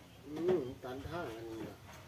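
A dove cooing: a short phrase of low, wavering coos lasting about a second and a half.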